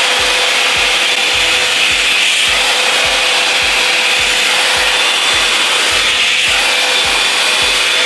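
Revlon One Step Blowout Curls hot-air brush running: a steady rush of blown air with a thin, steady whine.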